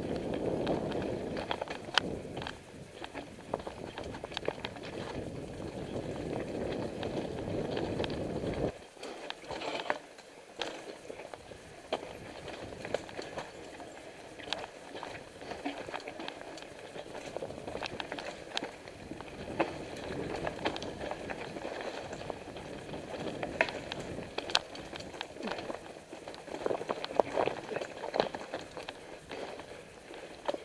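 Mountain bike ridden fast over dirt singletrack, heard from a camera mounted on the bike or rider: tyre noise on dirt with scattered knocks and rattles from the bike over roots and bumps. A dense low rumble fills the first nine seconds or so and then cuts off suddenly, leaving quieter rolling with many sharp clicks.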